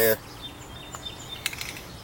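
A burst of hiss from a Dupli-Color flat black aerosol spray can cuts off right at the start. Then there is only low background with faint high chirps and a single click about one and a half seconds in.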